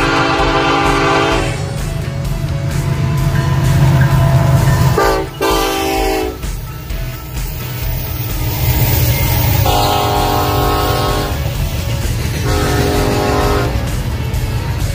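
Union Pacific GE ES44AC (C45ACCTE) diesel locomotive's multi-chime air horn sounding four blasts, each about one to one and a half seconds long, over the steady low rumble of the locomotives and a double-stack container train rolling past.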